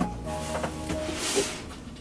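Cardboard shoe boxes being handled in a larger cardboard shipping box: a knock at the very start and a scraping rustle a little past the middle, over soft background instrumental music.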